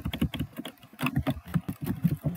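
Typing on a computer keyboard: a fast, uneven run of key clicks as a sentence is typed and a misspelled word is deleted and retyped.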